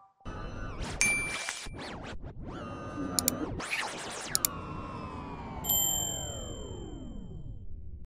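Animated end-card sound effects: whooshes and short tones, then a couple of sharp clicks about three and four and a half seconds in, as a subscribe button is clicked. A bright notification-style ding rings near six seconds over a long tone falling slowly in pitch.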